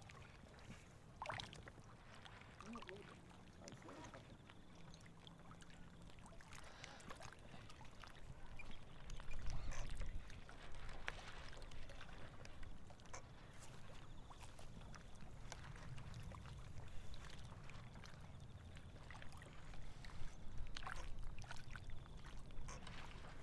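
Wind rumbling on the microphone, with a stronger gust about ten seconds in, and faint voices now and then in the background.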